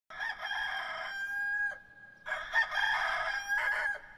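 A rooster crowing twice, each crow about a second and a half long, the first ending with a drop in pitch.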